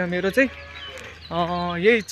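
A man's voice: a brief utterance, then a drawn-out vowel held at a steady pitch for about half a second near the end.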